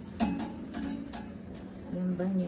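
A few scattered short clicks and knocks over a faint background murmur of voices.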